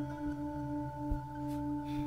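Ambient film-score drone: several steady tones held together in a ringing, bowl-like chord, with a couple of faint low knocks.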